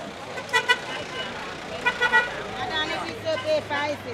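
Vehicle horn tooting in short beeps through a market crowd: two quick toots about half a second in and a few more around two seconds in, with people's voices in the second half.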